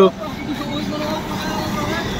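Steady street traffic noise from vehicles passing on the road, with faint voices.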